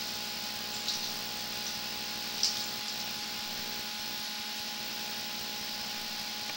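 A steady hum with a high hiss, and a couple of faint ticks about one and two and a half seconds in.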